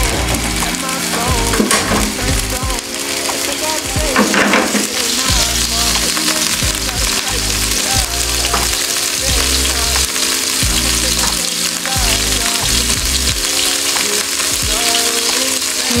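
Chicken pieces sizzling in hot oil in a non-stick frying pan, a steady hiss throughout, under background music with a regular bass line.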